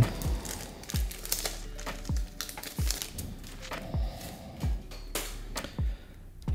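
Foil Pokémon booster pack crinkling as it is handled and opened, over background music with a steady beat.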